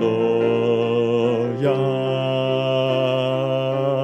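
Unaccompanied mixed choir singing, with the second bass part brought forward: the basses hold long low notes on the syllables 'yom' and then 'lo', while the upper voices move in steady 'ya la' figures above. The chord changes about a second and a half in.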